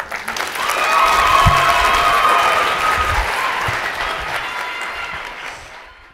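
Audience applauding, swelling over the first second or so and then slowly dying away.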